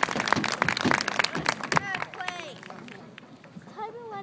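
Stadium audience clapping, loud at first and dying away after about two seconds, with a few spectators' voices calling out as the applause fades.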